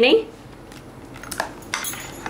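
A steel spoon stirring thin curd in a glass bowl, with a few light clinks of metal on glass in the second half.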